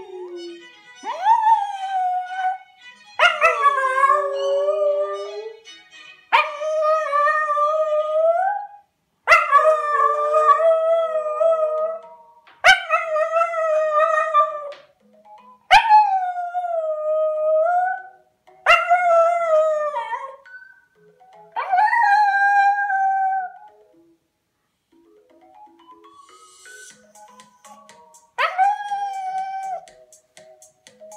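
Welsh Terrier howling along to pop music playing quietly: about nine long, wavering howls of two to three seconds each, separated by short breaks, then a pause of a few seconds before one last howl near the end.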